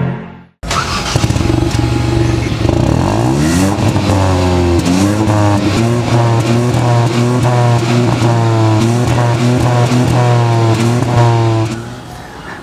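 Exhaust of a Hyundai i20 N Line's 1.0-litre turbo-petrol engine, heard from the dual tailpipes as the stationary car is started. It is revved up about three seconds in, then held up with a long series of quick throttle blips, to show off the sporty exhaust note.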